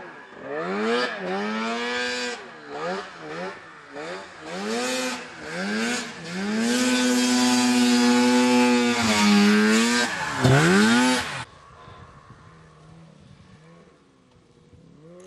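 Snowmobile engine revving up and down in repeated surges, then held at a high, steady pitch for a couple of seconds before dropping and rising once more. The sound cuts off abruptly about two seconds before the end.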